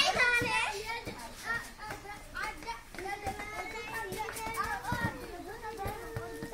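Children's voices calling and shouting while playing football, with a few short knocks among them.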